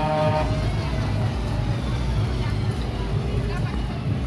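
Funfair din around a dragon roller coaster: a steady low rumble of the coaster cars running on the steel track, under crowd chatter. A buzzing horn tone cuts off about half a second in.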